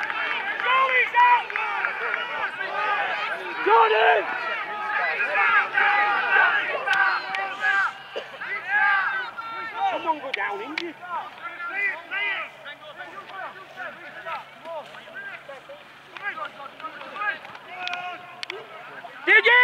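Overlapping shouts and calls from rugby league players and spectators during open play. The voices are busiest in the first half and thin out after about eight seconds.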